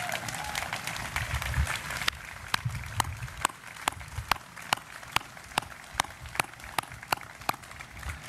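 Audience applause from a seated crowd. About two seconds in, one person's claps stand out, loud and even at about two a second, until near the end.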